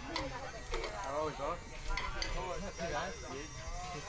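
Faint voices talking in the background, too low to make out the words.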